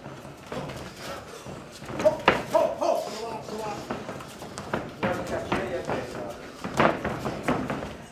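Sharp thuds of gloved punches and boxers' feet on the ring canvas, loudest about two seconds in and again near seven seconds, under shouting voices from the corners and crowd in a hall.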